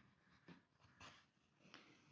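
Near silence, with a few faint, brief rustles of a tapestry needle and gold yarn being drawn through crocheted fabric.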